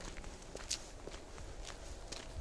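Faint footsteps of a person walking at a steady pace, a soft step about every half second.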